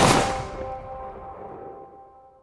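Outro logo sting: a sharp hit over a held musical chord, both fading out slowly.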